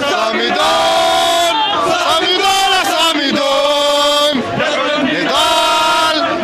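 Large crowd of protesters chanting a slogan in unison, in loud held phrases about a second long, one after another, with a short break about four and a half seconds in.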